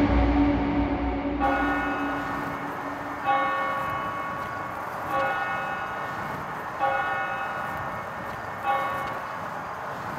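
A bell tolling slowly, five strikes about two seconds apart, each ringing on and fading away. A low drone fades out within the first second or so.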